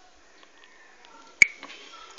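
A single sharp plastic click about one and a half seconds in, followed by a few faint ticks, as a tablet and a USB cable plug are handled, over quiet room tone.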